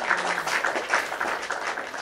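Applause: many hands clapping in a dense, even patter.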